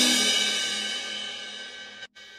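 Yamaha arranger keyboard's style playback ending: the last chord and a cymbal ring out and fade away steadily over about two seconds, with no further drum hits.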